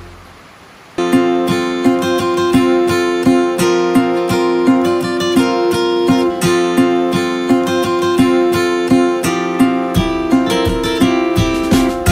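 Background music: acoustic guitar strummed in a steady rhythm, coming in about a second in after a brief lull.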